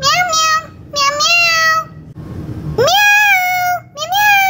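A child imitating a cat: three drawn-out meows, each rising at the start and then held for most of a second.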